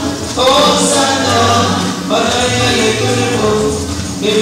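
Choir singing in phrases about two seconds long.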